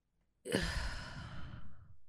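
A woman's long sigh, one breath out starting about half a second in and fading away.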